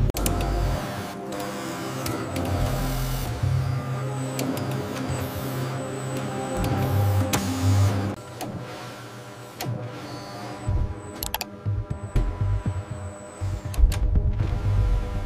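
Whirring of small electric motors, like automated robotic machinery, with several sharp clicks in the second half, over background music with a pulsing bass.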